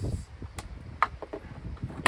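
A few short, sharp plastic clicks and knocks from hands working on the Worx Landroid WR155E robot mower's plastic housing, the clearest about half a second and a second in.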